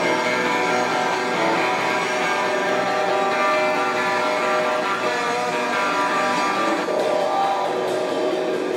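A live rock band playing, with guitars to the fore, steady and loud.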